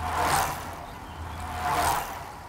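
A sound-effect sting: rushing noise that swells about half a second in, fades, and swells again near the end, over a low hum.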